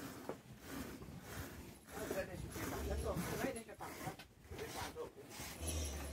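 A cow being milked by hand: short, repeated squirts of milk hitting milk already in a metal pail, with faint voices behind.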